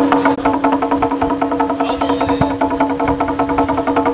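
Traditional Taiwanese temple-procession percussion music: rapid, even drum and woodblock strokes over a steady held note.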